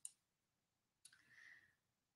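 Near silence, with a faint click at the start and another faint, short sound about a second in.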